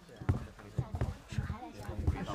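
A series of soft, low thumps at an uneven pace, with faint murmured voices between them.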